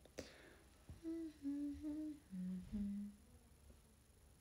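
A young woman humming a short tune of five held notes, the last two lower, with a brief noise just at the start.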